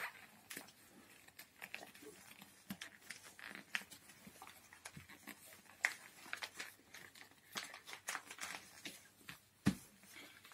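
Paper being folded and creased by hand: scattered soft crinkles and rustles, with a single thump near the end.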